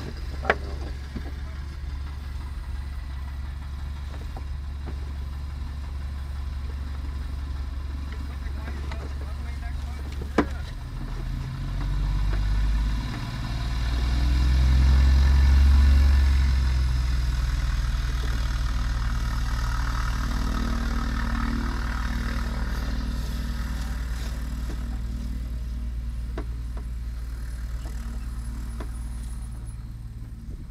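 Light aircraft piston engine idling steadily close by, growing louder from about a third of the way in to a peak around the middle, then easing back down, with a couple of sharp clicks.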